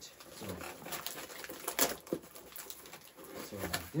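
A cardboard box and its packaging being handled, with soft rustling and one sharp rustle about two seconds in.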